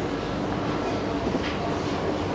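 Steady background noise, an even hiss and rumble with no distinct events.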